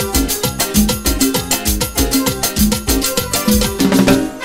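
Live Latin dance band playing an upbeat tropical number, driven by congas, timbales and a scraped güiro in a steady, dense rhythm.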